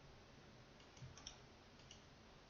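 Near silence broken by a few faint computer-mouse clicks: two or three close together about a second in, and another near the end.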